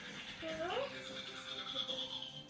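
A young child's voice making one short rising sound about half a second in, over music playing in the background.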